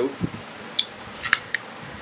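A few short, crisp crunches of a person biting into and chewing a raw apple. The loudest comes a little past a second in.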